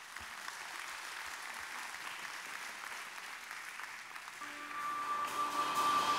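Congregation applauding lightly. About four and a half seconds in, a held note from the worship band fades in and swells as the song begins.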